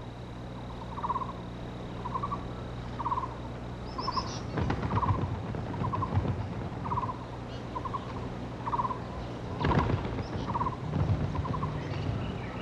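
A bird, plausibly a Taiwan blue magpie, gives a short rasping call over and over at an even pace, about three calls every two seconds. A few higher chirps come in about four seconds in, and there are two brief rustling knocks.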